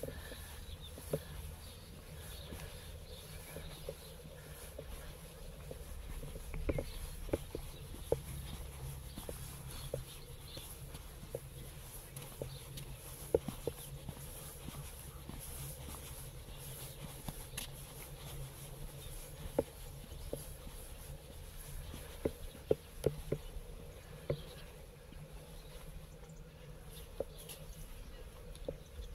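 Quiet outdoor ambience: a low rumble of wind on the microphone, a faint steady high hiss, and scattered light ticks and taps at irregular intervals.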